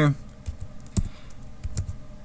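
Computer keyboard keys pressed one at a time: a handful of separate clicks, the loudest about a second in.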